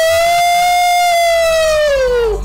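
A man's loud, high held 'ooh' shout: it slides up into the note, holds it steadily for about two seconds, then sags in pitch as it fades.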